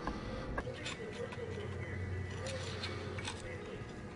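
A few light metallic clicks and taps as steel bolts are started by hand through the cam gear into the camshaft thrust plate of a Caterpillar 3406 diesel engine, over a low steady hum.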